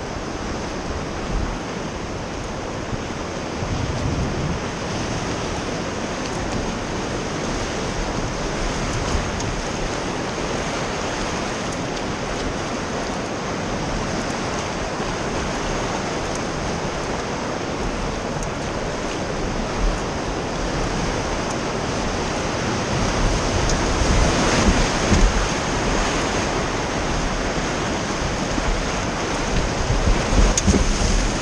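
Rushing river water and whitewater rapids heard from a raft, a steady noise that grows louder and more uneven about three-quarters of the way through as the raft nears the rapid.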